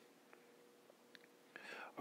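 Near silence: quiet room tone with a faint steady hum and a couple of tiny ticks, then soft speech starting near the end.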